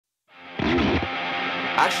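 Guitar holding a sustained, ringing chord that fades in from silence, with the tones held steady.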